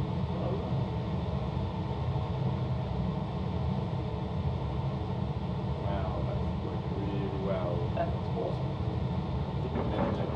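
Steady low rumble of a laboratory fume hood's extraction fan. Faint voices are in the background about six to eight seconds in.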